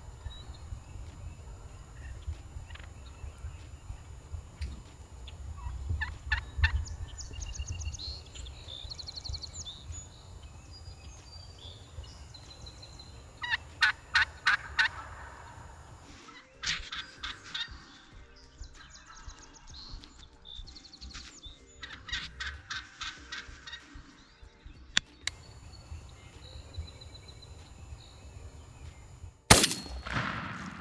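Wild turkey toms gobbling, several loud rattling gobbles in bursts with softer calls between. A single loud gunshot comes just before the end.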